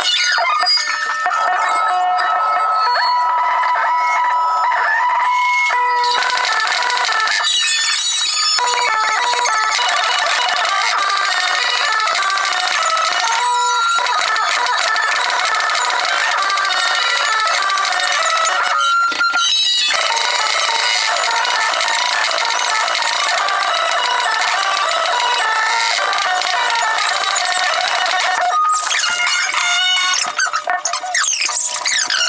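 A live rock band's set with drum kit, played back heavily sped up so that its pitch is raised very high and sounds squeaky, with no low end. The sound runs loud and busy, with brief breaks every few seconds.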